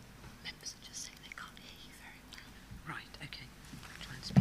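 Low whispered voices at a microphone, with a few faint clicks.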